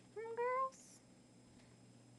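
A single short meow-like animal call, about half a second long and rising a little in pitch, near the start.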